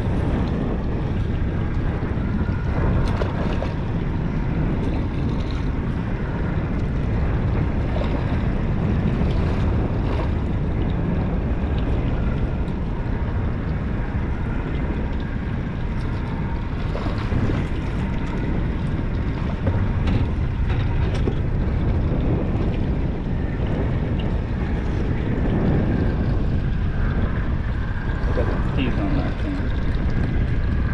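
Wind buffeting the microphone steadily, over water lapping against a small open boat's hull.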